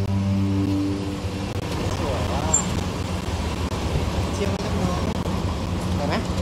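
Soundtrack music stops about a second in, giving way to a car's engine running as it draws up at the curb, over street noise.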